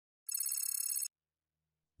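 A transition sound effect: a short, high-pitched trilling ring lasting under a second, starting a moment in.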